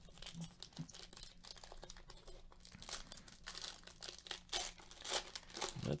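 Foil wrapper of a Panini Donruss basketball card pack crinkling and tearing as gloved hands pull it open: a quiet, continuous run of crackles.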